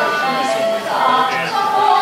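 Singing with instrumental accompaniment from a staged Chinese opera duet, the voice holding and bending sustained notes.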